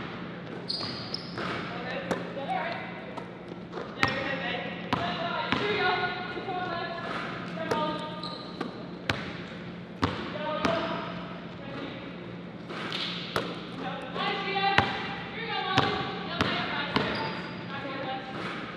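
Basketballs bouncing on a hardwood gym floor: sharp, irregular thuds about every second, echoing in the large hall, over a steady low hum.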